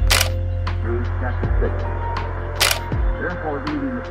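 Background music with steady bass notes and a gliding melodic line. A camera shutter click sounds at the start and again about two and a half seconds later.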